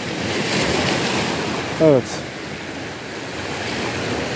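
Sea surf washing onto a rocky, pebbly shore. The rush of a wave swells in the first second or two, eases off, and builds again near the end.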